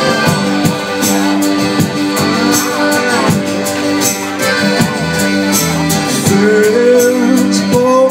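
Live folk band playing the instrumental opening of a song: accordion holding chords under steadily strummed acoustic guitars.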